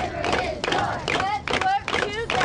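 A group of children shouting and cheering together, many high voices overlapping at once.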